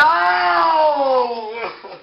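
A person's loud, long drawn-out vocal cry, held for under two seconds as its pitch slowly falls, then fading out.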